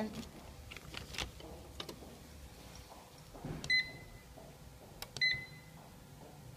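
Two short electronic beeps, about a second and a half apart, from a packing machine's control-panel keypad as its buttons are pressed, preceded by a few faint clicks.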